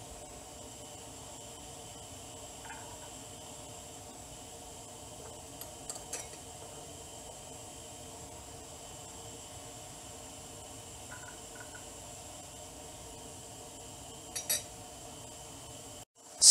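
Faint clinks of a spoon against porcelain bowls as cooked red beans are put into them: a few light scattered taps, with two sharper clinks near the end, over a steady faint hum.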